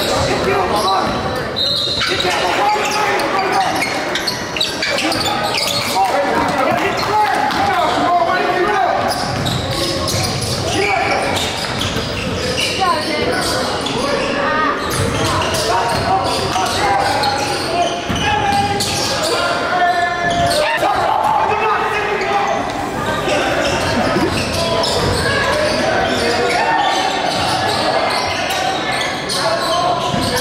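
Live basketball game sound in a large gym: a basketball bouncing on the hardwood court among indistinct voices of players and spectators, echoing in the hall.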